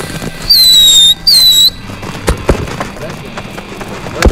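Fireworks going off: two loud whistles, each about half a second long and sliding slightly down in pitch, then a couple of sharp pops a second later.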